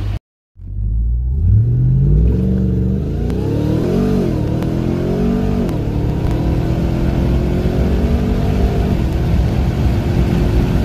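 Supercharged 6.2-litre Hemi V8 of a tuned 2021 RAM TRX at full throttle from a standstill, heard inside the cab. The engine note climbs in pitch and drops back as the transmission shifts up, about four and five and a half seconds in, then keeps pulling hard.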